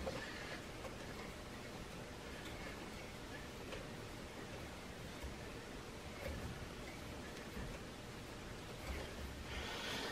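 A hand tap turned by a tap wrench, cutting threads into a drilled hole in a steel railroad spike. It is faint: a few scattered soft clicks and scrapes over a low hiss.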